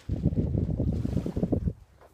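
Wind buffeting the microphone: a loud low rumble lasting about a second and a half that stops shortly before the end.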